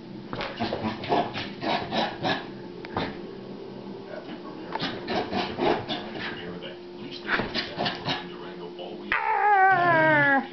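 A small dog making rasping play noises in runs of quick, short bursts, about three or four a second. About nine seconds in, a louder falling tone begins.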